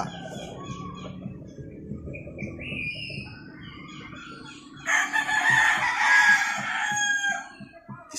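A rooster crowing once, a single long call of about two and a half seconds starting about five seconds in, with faint chirping before it.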